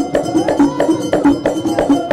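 Moroccan traditional percussion music with hand clapping: a steady rhythm of struck, ringing strokes, about three a second.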